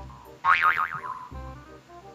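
A cartoon-style 'boing' sound effect comes in suddenly about half a second in: a wobbling tone that slides down over about half a second, over background music.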